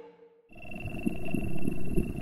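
The last notes of an electronic vaporwave track die away to near silence. About half a second in, a quiet ambient lowercase-style piece begins: two steady held tones, one low and one high, over a faint low crackling rumble with small scattered clicks.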